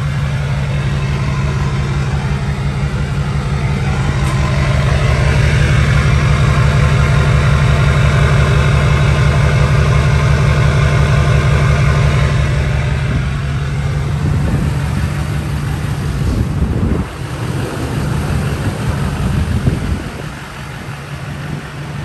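Duramax LBZ 6.6 L V8 turbodiesel idling steadily, heard close at the exhaust pipe. The low rumble grows louder over the first few seconds as the microphone nears the tailpipe, then fades in the second half as it moves away.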